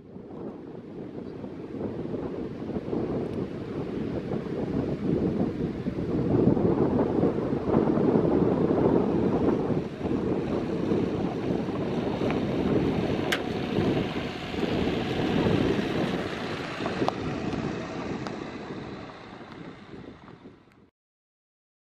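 Wind buffeting the microphone over the sound of surf. A few sharp clicks come in the second half as a Daihatsu Copen's electric folding hardtop opens and stows.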